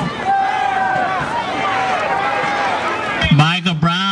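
Stadium crowd noise with indistinct voices and calls. A little over three seconds in, a loud held pitched sound with a wavering top cuts in.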